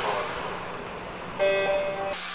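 Logo-sting sound effects: a fading rush of noise, then about one and a half seconds in a short, bright chord of chime-like tones that cuts off abruptly.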